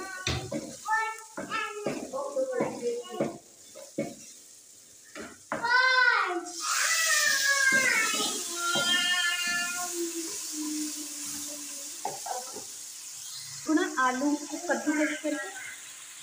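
Hot masala in an aluminium karahi sizzles loudly all at once when liquid is poured into the hot pan about six seconds in, then the hiss slowly dies down. Voices are heard before and after it.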